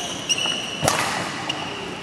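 Badminton rally on a wooden indoor court: a sharp crack of a racket hitting the shuttlecock a little under a second in, with a high squeak of court shoes on the floor lasting about a second and a few lighter knocks around it, echoing in the hall.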